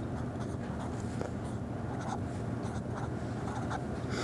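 Felt-tip marker scratching across paper in a run of short strokes as an equation is written by hand, over a steady low background hum.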